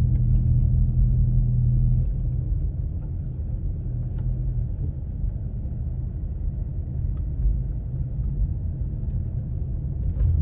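Car driving slowly, its engine and tyre rumble heard from inside the cabin. A low hum eases off about two seconds in, and a steady lower rumble carries on.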